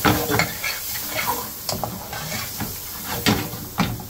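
Metal spoon stirring and scraping pieces of lamb and chicken around a frying pan, with sharp knocks of the spoon against the pan over a sizzle, as the spices are dry-roasted with the meat.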